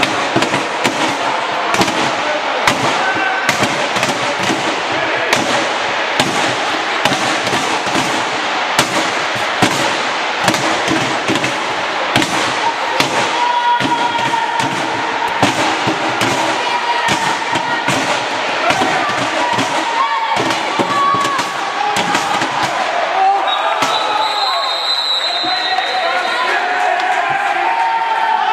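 Indoor handball game: frequent irregular knocks of the ball bouncing and striking, over the steady noise of a crowd with voices calling out. A steady high tone lasts about two seconds near the end.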